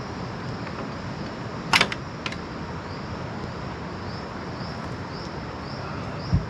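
A wooden hut door being unlocked and opened: one sharp metal click of the padlock or latch about two seconds in, then a smaller click. Underneath are a steady outdoor hiss and faint high chirps repeating about twice a second.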